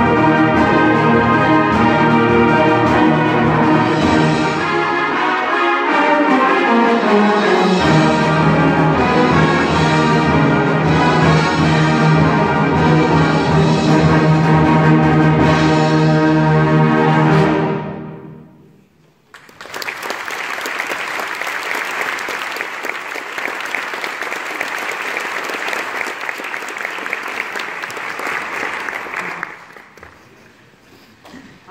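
High school concert band, brass to the fore, playing loud and ending on a long held chord that cuts off about eighteen seconds in. The audience then applauds steadily for about ten seconds.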